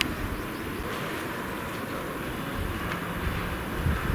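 Steady background noise, an even rumbling hiss with no distinct events.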